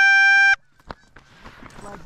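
Hunter's goose call blown in one long, steady honk that cuts off sharply about half a second in, followed by faint honking from the approaching Canada geese near the end.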